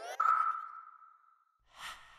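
Electronic logo-sting sound effect: a bright ping-like tone sounds about a fifth of a second in and fades away over about a second, then a short whoosh near the end brings in another ping.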